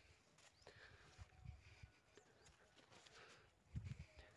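Near silence: faint outdoor field ambience with soft footsteps on the soil path and a few faint high chirps. There is a low thump shortly before the end.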